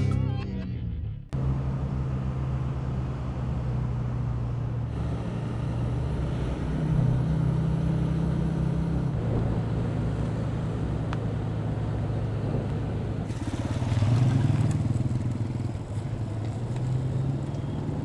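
Motorcycle engine running while being ridden, its low throb swelling and rising in pitch as it speeds up, most strongly about two-thirds of the way through. A short musical sting fades out in the first second.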